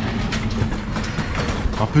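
Train running along the track through the market, a steady noise with occasional faint clicks. A man's voice begins near the end.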